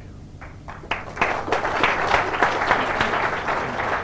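Audience applauding: a few scattered claps about half a second in, swelling within a second into steady applause.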